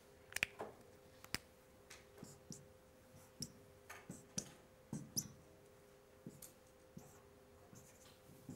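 Felt-tip whiteboard marker tapping and stroking on a whiteboard in short irregular clicks as small crosses and numbers are written, with a faint steady hum underneath.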